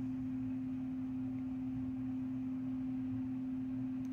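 A steady electrical hum: one unchanging low tone that holds without a break.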